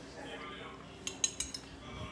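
Metal chopsticks clinking against a ceramic bowl: a short cluster of quick clinks a little over a second in, over a faint background voice.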